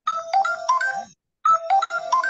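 Mobile phone ringtone: a short melodic tune of quick notes, played once and starting again about a second and a half in.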